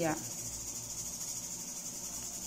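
Steady high-pitched hiss in the background, with the tail of a spoken word at the very start and no other sound.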